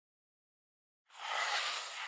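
Silence, then about a second in a short burst of even, hiss-like noise lasting just over a second.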